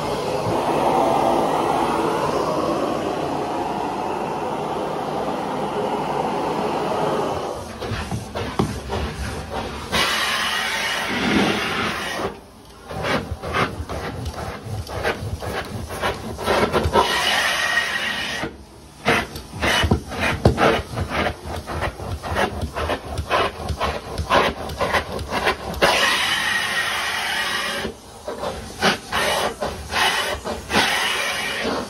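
Hot water carpet extraction: the extractor's vacuum hissing steadily through the hose. It then gives way to a stair tool worked over carpeted steps in quick strokes, the suction rush surging and breaking with each stroke and cutting out briefly a few times as the tool is lifted.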